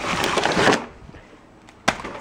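Rustling and crinkling of a grocery bag and plastic-wrapped packages as a hand digs into the bag, for a little under a second, then a single sharp knock near the end as a package is set down on a granite countertop.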